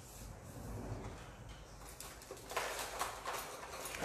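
Faint rubbing of a bare hand smoothing sugar paste (fondant) over a cake, with a few soft brushing strokes in the second half over a low hum.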